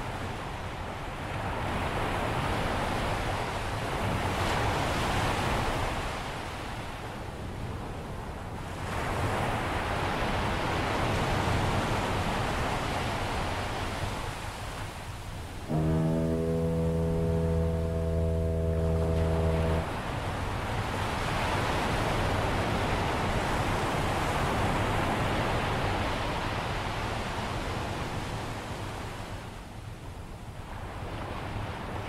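Ocean surf rising and falling in slow swells, with one steady foghorn blast of about four seconds a little past the middle, starting and stopping abruptly.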